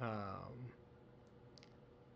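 A man's drawn-out "um", then a few faint, short clicks at the computer about a second and a half in.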